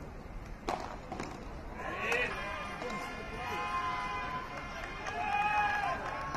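Two sharp padel ball strikes, half a second apart, a little under a second in, then raised voices calling out with long held shouts that grow louder near the end.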